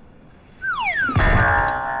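Comic music sting from the film's soundtrack: two quick falling swoops, then a loud struck chord about a second in that rings on and slowly fades.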